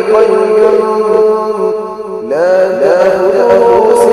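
A man's voice reciting the Quran in slow melodic tajweed style, holding one long note, then starting a new phrase that rises in pitch about two seconds in.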